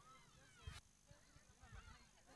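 Near silence: faint indistinct background sounds, with one short knock about two-thirds of a second in.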